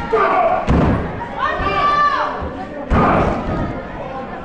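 Two heavy thuds of wrestlers' bodies landing on the wrestling ring's mat, about two seconds apart, with shouting voices between.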